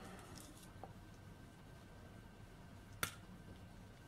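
Bent-nose pliers squeezing a small metal crimp bead on a necklace cord: one sharp click about three seconds in, after a fainter tick near the start, otherwise quiet.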